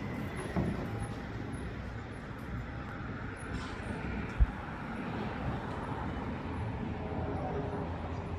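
Steady city street traffic noise from passing cars and other vehicles. A single short low thump comes about halfway through.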